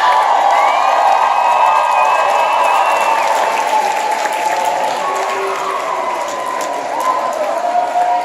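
Theatre audience applauding and cheering steadily. A long high-pitched cheer rises above the clapping during the first three seconds.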